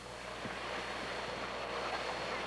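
Wind buffeting the microphone over choppy lake water, a steady rushing noise that slowly grows louder.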